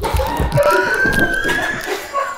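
A long, high-pitched shriek, held and rising slightly, over thumps at the start from people scuffling on a sofa.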